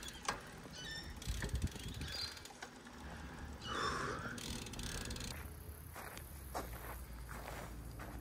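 Road bicycle riding along, with the freewheel ticking in short runs over a low rumble of wind and tyres. A brief higher-pitched sound comes about four seconds in.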